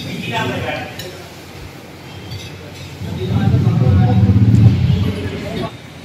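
A man humming a long, low closed-mouth "mmm" while chewing a mouthful of food, starting about halfway through.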